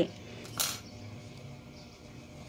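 A single short hissing rustle about half a second in, over quiet room tone, as the work is handled.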